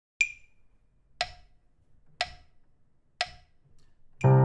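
Metronome clicking four beats at 60 beats per minute, one click a second, the first click higher-pitched as the accented downbeat: a one-bar count-in in 4/4.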